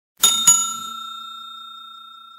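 A bell sound effect strikes twice in quick succession, about a fifth and half a second in, then rings on with a clear tone that slowly fades.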